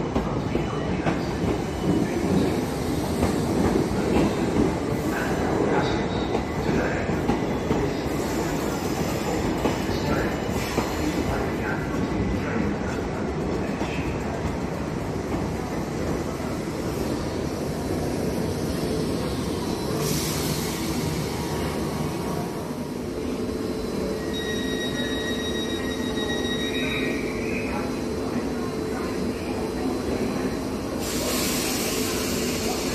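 Southern Class 455 electric multiple unit moving slowly along a station platform: a steady rumble of wheels and running gear, louder in the first half. A thin high squeal sets in a few seconds before the end as the train slows.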